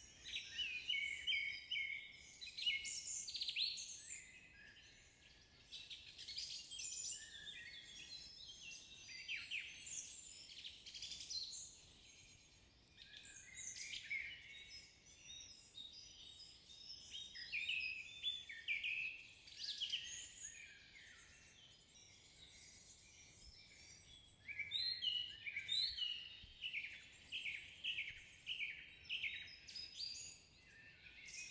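Forest birdsong: several songbirds chirping and singing in overlapping phrases, with short lulls between. Near the end one bird repeats a short note about twice a second.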